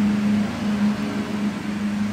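A steady, low mechanical hum, one unchanging pitch with overtones, running on without a break.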